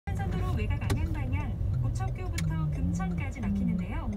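Steady low road rumble inside a moving car, with a voice reading a traffic report over it, as from the car radio.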